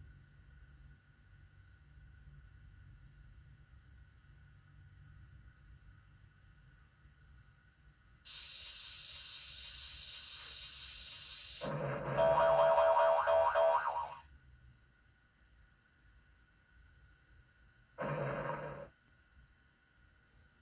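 A company logo's electronic jingle from a VHS tape, heard through the TV speaker: a steady high tone for about three and a half seconds, then a louder, lower chord for about two seconds. A short sound follows near the end.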